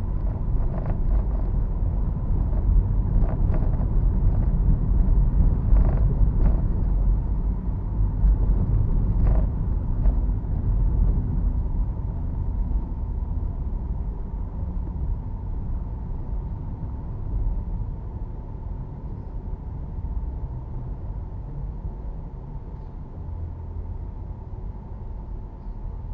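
Low road rumble of a car's engine and tyres heard from inside the cabin while driving, heavier in the first half and easing off later, with a few short knocks in the first ten seconds.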